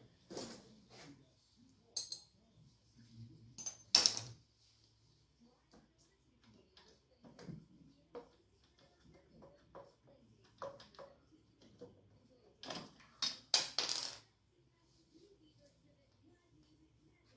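Metal hand tools and small engine parts clinking and clattering during a hands-on engine teardown, with scattered light clicks and a sharper ringing clank about four seconds in and a cluster of louder clanks near the end.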